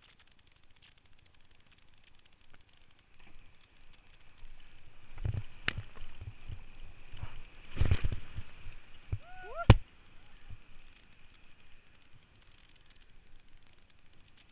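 Whitewater kayak running a rapid and dropping over a ledge: rushing, splashing water against the hull and camera, building from about four seconds in with loud splashes around the middle. A brief gliding cry comes just before a single sharp smack near ten seconds, the loudest moment, then the water settles to a low wash.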